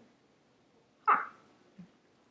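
A pit bull gives one short, sharp yip about a second in.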